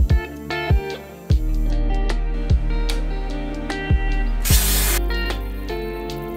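Background music: plucked and keyboard notes over a deep kick-drum beat. A short, loud burst of hiss cuts in about four and a half seconds in.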